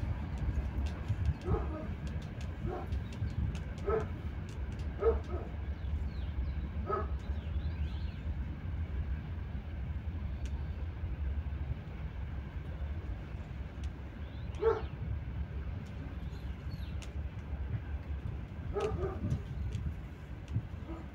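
Short animal calls, about seven of them at irregular intervals, over a steady low rumble.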